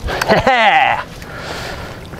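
A man's wordless excited cry, falling in pitch over about the first second, then a faint hiss.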